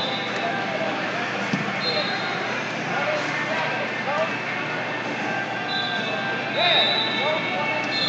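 Crowd of spectators and coaches in a large gym, many voices talking and shouting over one another without pause. A high steady tone sounds three or four times, each for under a second.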